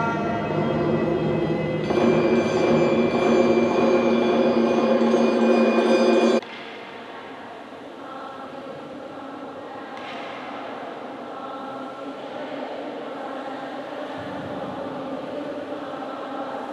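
Choir singing a hymn, full and loud until about six seconds in, where it stops abruptly; quieter chanted singing follows.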